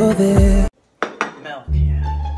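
A few sharp clinks of a plate being handled on a kitchen counter, following a brief silence after music cuts off; low string music starts near the end.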